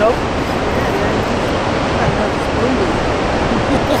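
Steady rushing roar of water pouring through a dam's open spillway gates, heard from a small boat on the tailwater.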